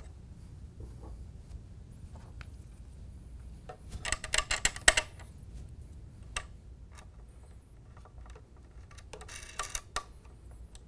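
Thumb screws being fitted and turned by hand into a children's tricycle frame: scattered small clicks, with a run of quick clicks and rattles about four seconds in and another near the end.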